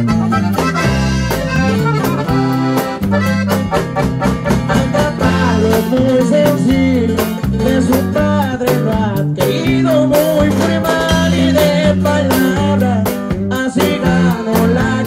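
Live sierreño-style regional Mexican band music in an instrumental passage: an accordion carries the melody over a stepping bass line and a steady strummed rhythm.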